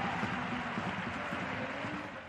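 Football stadium crowd, a steady murmur of many voices heard as an even wash of noise.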